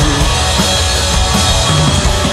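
Live rock band playing an instrumental stretch with no singing: two electric guitars, bass guitar and drum kit, loud and steady.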